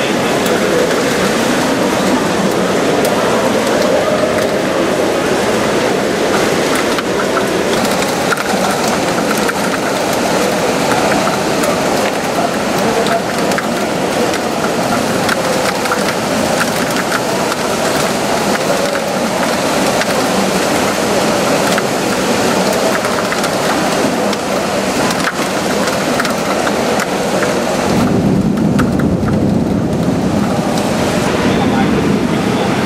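Heavy downpour of large raindrops, a steady rush of rain dotted with many sharp ticks of drops striking. Near the end the sound shifts to a lower rumble.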